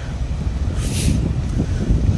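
Wind buffeting the microphone, a loud, uneven low rumble, with a brief hiss about a second in.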